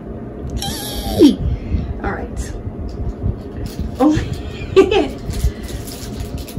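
A woman's excited voice without clear words: a falling cry about a second in, then short exclamations around four and five seconds, over a low rumble.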